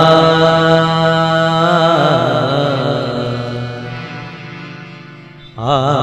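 Kannada devotional bhajan: a man's voice holds a long, wavering, ornamented sung note over a steady accompanying drone. The note fades away over about four seconds, and a new sung phrase starts just before the end.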